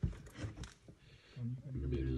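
A man's muffled voice in a cramped stone shaft, a low held sound in the second half, after a few faint knocks and scrapes.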